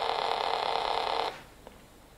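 Homemade Arduino polyphonic synthesizer playing two notes at once, giving a harsh, dense buzz, heavily distorted by intermodulation from its faulty square/saw-wave mixing algorithm. The sound cuts off suddenly about a second in as the keys are released.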